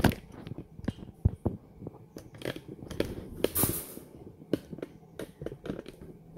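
Irregular clicks, taps and rustles of a thick 3 mm bonsai wire being handled and anchored at a small tree's trunk, with a knock at the start and a short scraping rustle a little past halfway.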